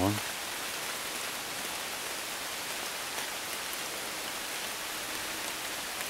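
Steady rain falling through the woods, an even hiss at a constant level.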